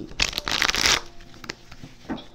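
A deck of tarot cards being shuffled by hand: a dense, crackling rush of shuffling for most of a second, starting just after the beginning, then a few light card clicks.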